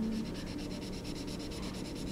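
Felt-tip Crayola marker rubbing back and forth on paper as an area is colored in.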